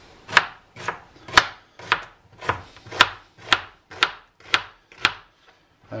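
Kitchen knife slicing an onion on a plastic chopping board: a steady run of about ten cuts, roughly two a second, each blade strike knocking on the board, stopping shortly before the end.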